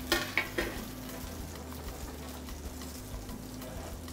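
Trout fillets frying in oil in cast-iron skillets: a faint, steady sizzle, over a low steady hum.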